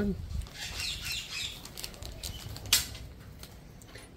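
A small plastic bag of zinc spacers rustling and crinkling as it is opened and handled, then a single sharp click, which is the loudest sound, as a small metal part meets the steel table.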